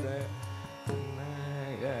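Carnatic classical music in raga Thodi: a steady tanpura drone under the melody, with a single sharp drum stroke just under a second in, after which a held melodic note follows.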